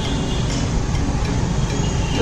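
Steady outdoor street noise, a low rumble of traffic.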